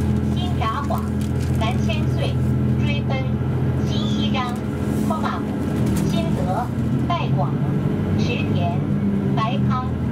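Series 283 tilting diesel multiple unit's engines running steadily at idle, a low even hum whose note shifts about six seconds in as the train pulls away from the platform.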